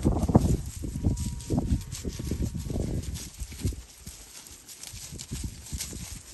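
Girolando heifers' hooves stepping and scuffing through dry pasture grass: irregular knocks and rustles, busier in the first half and thinning out after about three seconds.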